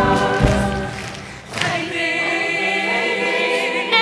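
Stage-musical cast chorus singing with accompaniment. After a brief drop in level about a second and a half in, the ensemble holds one long full chord.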